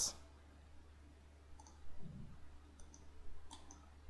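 A few faint, sharp clicks of a computer mouse, scattered through the second half, over a faint steady low hum.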